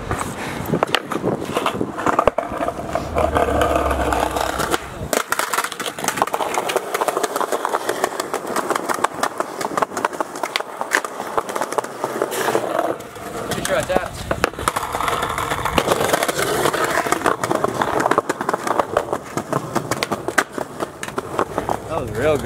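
Skateboard wheels rolling over rough, grit-strewn concrete sidewalk, with several sharp clacks of the board popping and landing.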